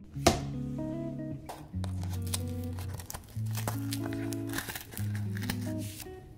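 Mellow background music with a plucked guitar, over the crinkling of a cardboard box of pancake mix being handled and opened. There is a sharp crackle just after the start, with a few lighter clicks later on.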